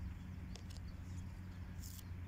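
Tarot cards being handled and laid down on a cloth towel: faint soft taps and a brief sliding rustle near the end, over a low steady hum.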